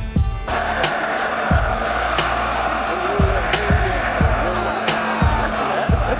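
A hip-hop beat keeps going with an even kick-drum pulse, and about half a second in a loud, dense crowd din comes in over it.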